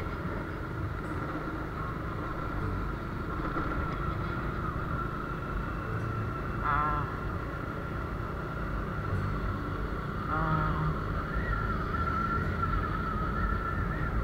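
Motorbike on the move: steady engine and wind rumble with road noise, and a steady high whine.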